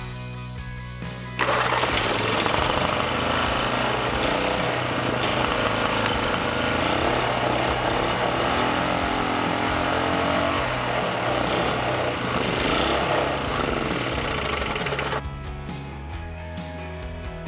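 Single-cylinder small engine with a clear cylinder head, running on octane booster alone with no gasoline in the tank. It starts loud and abruptly about a second and a half in and stops suddenly about a second before the end, over background music.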